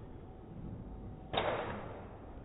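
A golf club striking a ball: one sharp crack about a second and a half in, with a short echoing tail that fades over about half a second.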